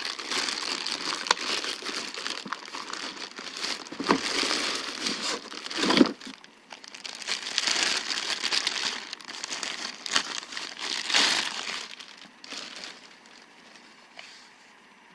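Thin clear plastic bag crinkling and rustling in irregular bursts as it is pulled off a cordless circular saw, with a short lull about halfway, dying down near the end.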